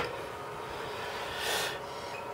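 Steady low background hiss, with one short breath about one and a half seconds in.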